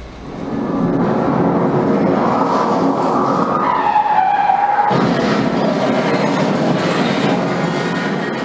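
Loud, steady rushing noise mixed with music, swelling in over the first second and fading out near the end: a theatre sound cue played over the blackout that ends the scene.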